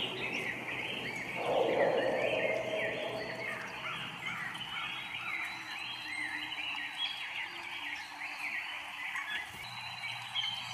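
Nature-sound soundscape: a dense chorus of high, short chirps, each rising and falling, overlapping and repeating rapidly. A brief louder rushing swell comes about one and a half seconds in.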